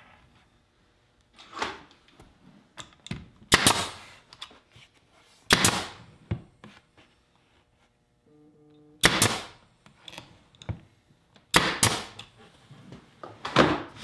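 Pneumatic brad nailer firing nails through glued plywood, about six sharp shots spread irregularly a second to a few seconds apart, with quieter handling knocks between them.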